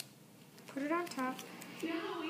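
A voice says a few words around the middle, with a sharp click at the very start and a few light clicks.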